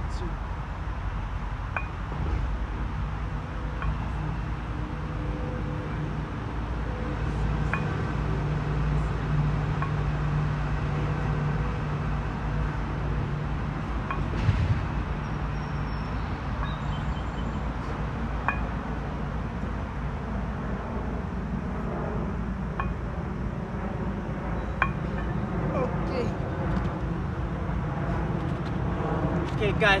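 Steady low outdoor background rumble with a few short, light metallic clinks from kettlebells moved through floor chest flies.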